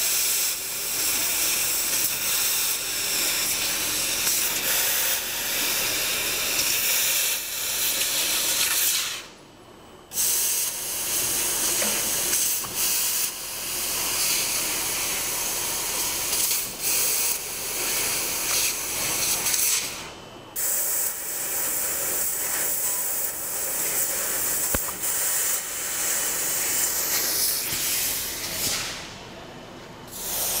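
1 kW fiber laser cutting machine cutting lettering into sheet metal, its cutting head giving a steady hiss. The hiss stops briefly about nine seconds in, again around twenty seconds, and just before the end, where the head pauses between cuts.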